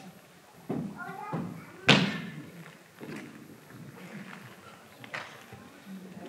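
A few thumps ringing in a large hall, the loudest and sharpest about two seconds in, with a short rising vocal sound just before it.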